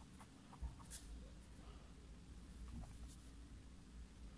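Pencil writing on paper: faint, irregular scratches of the lead as the words are written, with one soft thump about half a second in.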